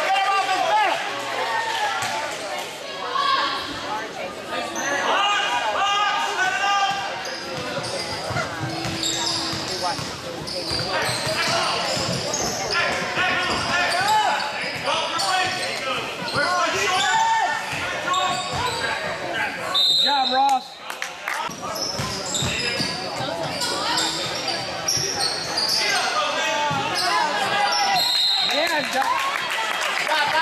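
Basketball game in a gymnasium: a ball bouncing on the hardwood court amid steady shouting and chatter from players and spectators, echoing in the large hall.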